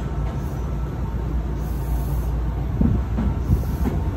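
Moving electric commuter train heard from inside the car: a steady low rumble of wheels on rail, with a few heavier knocks from the track about three seconds in.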